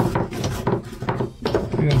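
Hand-carved wooden chess pieces clicking and knocking against each other and the wooden chess box as they are handled and pressed into their tray: a run of light, quick wooden knocks.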